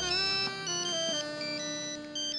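A mobile phone's synthesized ringtone melody, a few held electronic notes stepping from one pitch to the next.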